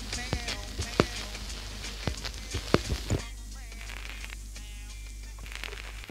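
The close of a reggae song played from a vinyl LP, with surface crackle and scattered sharp clicks from the record over a low steady hum. The music thins out about halfway through, leaving faint instrument notes under the crackle.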